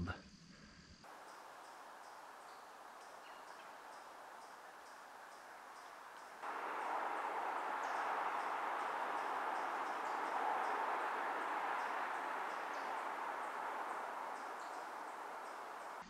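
Woodland ambience recorded on a camcorder: a faint even hiss with faint, regularly repeating high ticks. About six seconds in, a louder even rushing noise starts suddenly and eases off slowly toward the end.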